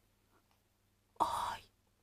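A woman's short whispered breath, about a second in, lasting under half a second; otherwise quiet.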